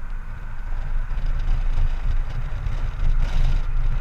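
Wind and road noise with a low rumble from a Honda Gold Wing GL1800 motorcycle as it gathers speed, growing louder over the first second and a half and then holding steady.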